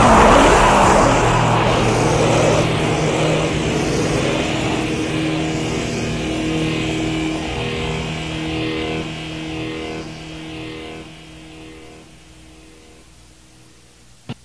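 The final distorted electric guitar chord of a death/thrash metal song ringing out after a loud last hit at the start, slowly dying away over about twelve seconds on a lo-fi cassette demo recording.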